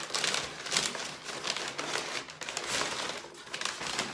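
Brown kraft wrapping paper rustling and crinkling as a wrapped item is pulled out of a cardboard box and unwrapped by hand, in irregular scratchy bursts.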